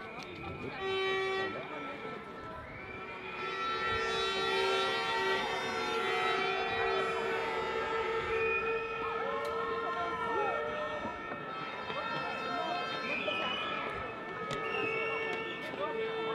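Horns sounding long, steady blasts over a crowd's voices, one held note following another for several seconds at a time.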